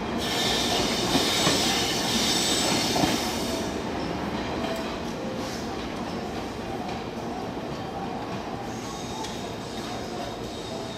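A locomotive-hauled Mani 50 baggage car pulling out and rolling away over the station tracks. Its wheels squeal high in the first few seconds, with a steady rumble and rattle on the rails that slowly fades as it moves off.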